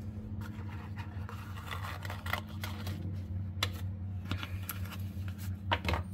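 Cardboard packaging and a paper card being handled: scattered light rustles and clicks, a few sharper ones near the middle and near the end, over a steady low hum.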